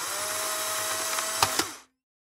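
Sound effect of an instant camera motor ejecting a print: a steady mechanical whir with a click near the end, stopping abruptly just under two seconds in.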